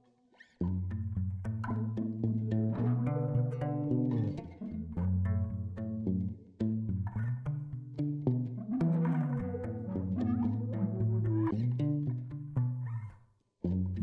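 Instrumental background music with a steady rhythm of plucked, bass-heavy notes, beginning about half a second in.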